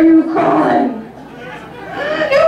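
A woman's recorded voice from a lip-sync track played over a club sound system: a drawn-out vocal sound held on one pitch, then sliding downward, with a quieter stretch after about a second before the voice returns near the end.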